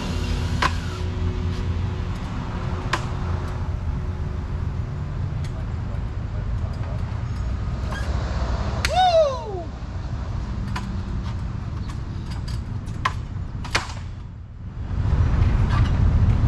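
Steady low outdoor rumble, with a few sharp knocks as the sign panels are handled on the sign face. About nine seconds in comes one short, loud falling voice-like call.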